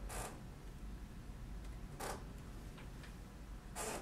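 Three short rubbing sounds, about two seconds apart, of a hand smoothing Plasticine clay on a sculpture, over a faint low hum.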